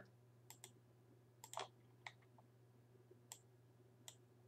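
Near silence with a low steady hum, broken by a handful of faint, scattered computer mouse clicks.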